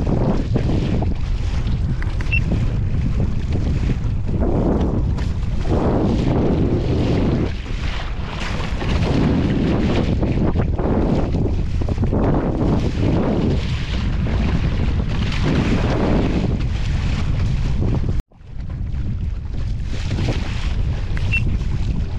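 Strong wind buffeting the microphone while a pedal kayak crosses choppy lake water, with water sloshing against the hull in uneven swells every second or two. The sound cuts out abruptly for a moment about eighteen seconds in.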